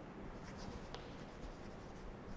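Chalk writing on a blackboard: faint scratching strokes as a word is written out, with one sharper tap a little under a second in.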